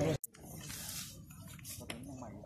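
Voices of a group of people working outdoors, broken by a sudden brief dropout to silence at an edit just after the start, then quieter, fainter voices with a short click near the end.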